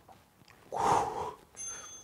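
A man's forceful breath out under exertion, one noisy puff lasting under a second near the middle. It is followed near the end by a faint, short high beep from the interval timer as the work period ends.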